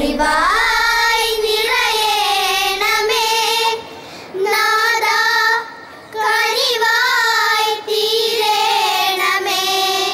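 Children singing in unison, a high-pitched melody in four long held phrases with short breaks between them.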